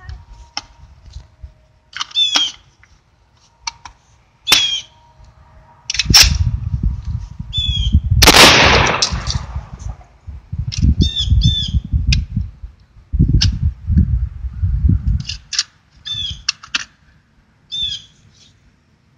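Catamount Fury II 12-gauge semi-automatic shotgun fired several times about two seconds apart, the loudest shot about eight seconds in, firing low-brass shells. Birds chirp between the shots.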